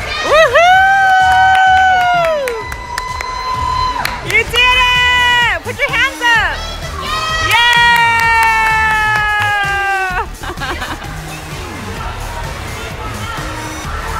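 Three long, high whooping cheers from a voice: the first about a second in, the second at about four and a half seconds, and the longest from about seven and a half to ten seconds, over background music and crowd noise.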